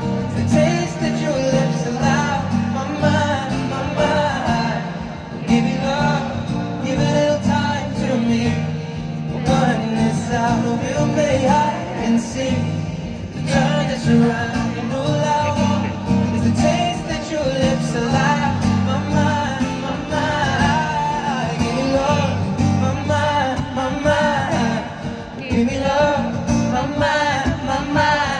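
Live concert music heard from the crowd: a male singer's sustained, wordless vocal lines over strummed acoustic guitar.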